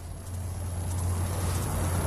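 Low, steady rumble of street traffic that slowly grows louder, with a faint, thin, high steady whine above it.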